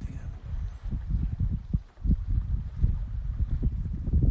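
Wind noise on a phone's microphone, a low rumble rising and falling in gusts, dropping away briefly about two seconds in.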